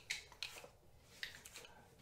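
A few faint clicks and rustles of a smartphone being fitted into a plastic tripod phone adapter: one near the start, another about half a second in, and one just past a second in.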